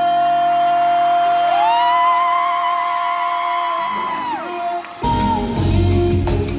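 Live pop music in a large hall: a high sung note rises and is held with vibrato over a long sustained keyboard tone. About five seconds in, the full band comes in suddenly with drums.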